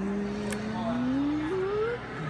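A person's voice holding one long drawn-out vowel, as in hesitant speech, that rises in pitch toward the end, with a short click about half a second in.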